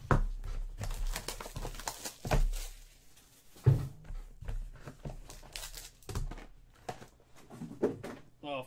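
A cardboard trading-card box being handled and opened on a table: a few sharp knocks, the loudest a little before halfway, with light rustling between them as a foil-wrapped pack is taken out.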